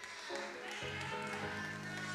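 Soft instrumental backing music: sustained keyboard chords that change about a third of a second in and again a little before one second.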